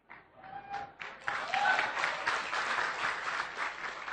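Audience applause, starting about a second in and tailing off near the end.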